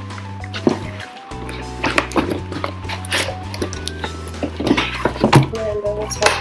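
Background music with steady held tones, over which cardboard scrapes, rustles and a few short knocks come as a boot box is pulled out of a tight cardboard shipping carton.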